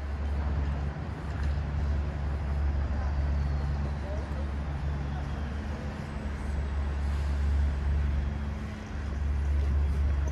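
Street traffic, with a large vehicle's engine running steadily close by as a deep, unbroken hum.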